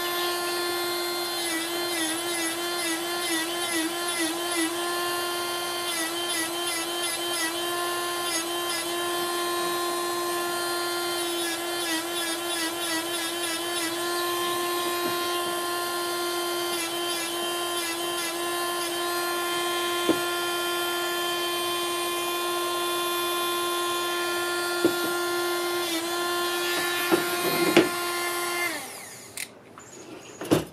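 A handheld high-speed rotary tool with a small disc, running with a steady high whine as it grinds away the reflective backing at the centre of a glass mirror. The pitch wavers repeatedly as the disc is worked against the glass. The tool shuts off about a second before the end, followed by a few light knocks.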